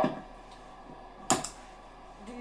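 A single sharp click, with a smaller click just after it, about a second and a half in: hand handling of the controls on a guitar pedalboard, setting up the DigiTech Trio+.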